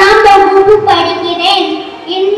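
A young boy singing, with held notes that step up and down in pitch and a short break near the end.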